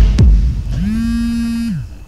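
A deep bass thump, then a smartphone vibrating on a tabletop for an incoming call: a rattling buzz that rises in pitch, holds for about a second, and dies away.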